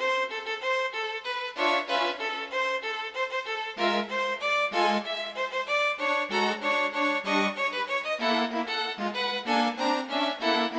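Solo violin, computer-rendered, playing a fast passage of short separate notes, several to the second.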